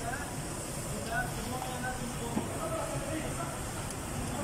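Indistinct background talking over a steady low workshop noise, with no distinct tool sound.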